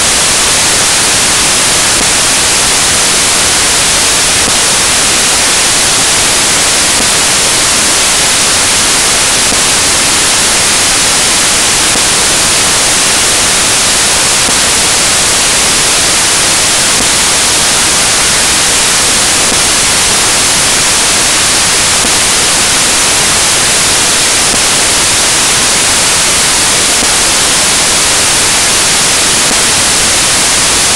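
Loud, steady static hiss like white noise, unchanging throughout.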